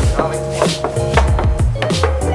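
Knuckles knocking on the steel body panel of a BMW E36, a series of sharp raps over background music with a steady beat. The knocks sound the same all over, which the builder takes as the sign that the body filler over the metal is very thin.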